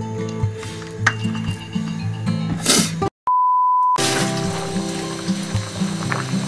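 Background acoustic guitar music. About three seconds in it breaks off for a moment of dead silence and a steady single-pitch electronic beep lasting under a second, then the music picks up again.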